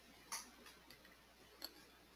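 Soft computer mouse clicks in near silence: a sharper click about a third of a second in, two faint ticks, then another click in the second half.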